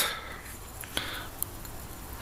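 Wooden spoon scraping lightly against a small bowl as ground spices are tipped out, with a couple of small taps about a second in. Quiet overall.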